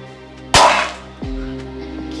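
A sharp crash about half a second in as a metal plate hits a concrete floor, over background music. A short falling tone follows, and the music moves to a new chord.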